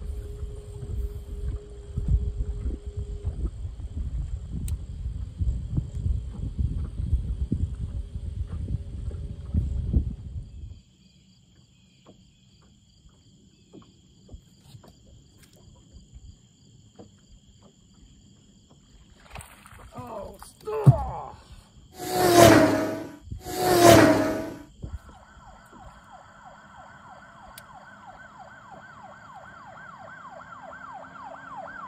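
A low rumble of wind on the microphone with a steady hum from the boat's motor, stopping suddenly about ten seconds in. After a quiet stretch come two loud short sounds about two seconds apart, then a steady whine near the end.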